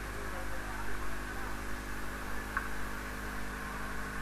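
Steady electrical mains hum with hiss, at an even level, with a single short click about two and a half seconds in.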